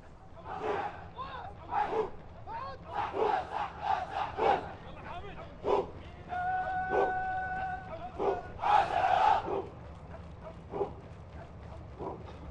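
A squad of parade troops shouting and chanting in unison as they jog past in formation: a run of short shouted bursts, one long held call about halfway through, and the loudest group shout about nine seconds in.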